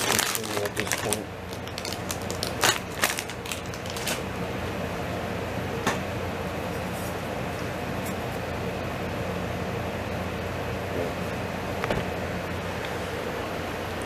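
Plastic bag crinkling and rustling, with sharp clicks in the first few seconds, over a steady low hum from an appliance running in the room.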